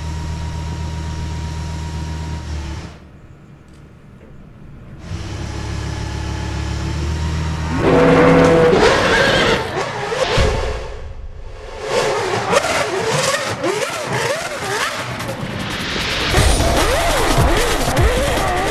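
Car engines running and revving on a soundtrack with music: a steady engine drone at first, dipping briefly, then louder and busier from about eight seconds in with rising and falling engine pitches.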